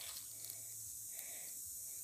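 Quiet background with a faint, steady high-pitched insect chirring.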